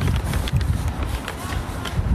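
Footsteps and a low, uneven rumble of wind and handling noise on a handheld phone microphone as the person holding it walks, with scattered sharp clicks.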